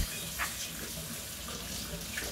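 Kitchen tap running into the sink while dishes are washed by hand, with one short clink about half a second in.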